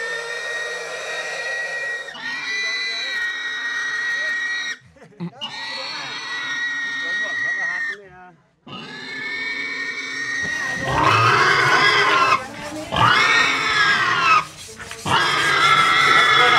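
A pig squealing while it is held down and carried: about seven long, high-pitched squeals of roughly two seconds each, one after another. The cries become louder and harsher in the last third.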